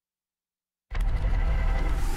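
Dead silence for just under a second, then a low, dense rumble starts abruptly and carries on.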